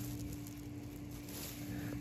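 Faint rustling and scraping of fingers digging through loose soil and dry grass and pine needles in a tortoise nest, over a steady low hum.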